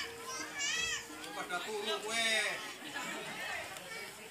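High-pitched voices of spectators, children among them, calling out and chattering in short bursts.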